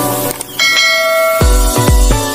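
A short whoosh, then a bright bell-like notification chime that rings for about a second. Electronic music with a heavy kick drum comes in about a second and a half in, about two beats a second.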